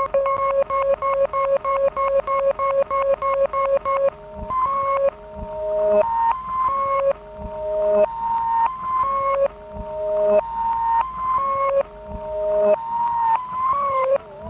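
Music box notes played through a DIY glitch delay effect module. A short captured fragment stutters at about seven repeats a second, then about four seconds in gives way to longer, abruptly cut tones stepping between a few pitches as the module's knobs are turned.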